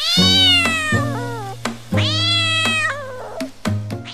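A cat meowing twice, two long drawn-out meows that sag in pitch at the end, over background music with a steady beat.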